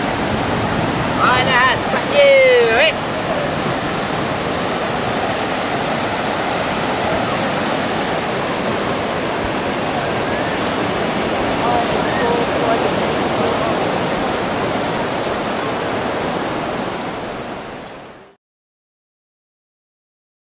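Steady wash of ocean surf on a beach, with a brief voice calling out a second or two in. The sound fades out to silence near the end.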